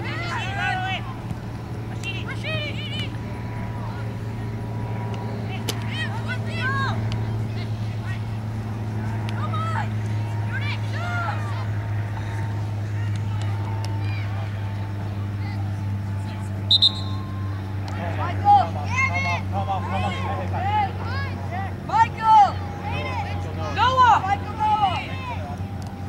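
Scattered distant shouts and calls across a soccer field, more frequent in the last third, over a steady low hum. A short high-pitched tone sounds about two-thirds of the way through.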